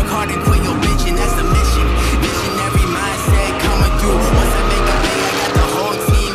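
Pickup truck doing a burnout: tyres squealing steadily with the engine revving, under hip-hop music with deep sliding bass.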